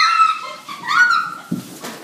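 Girls shrieking with high, rising cries as they slide down a carpeted staircase together, then a low thump about a second and a half in as they crash into the bottom of the stairs.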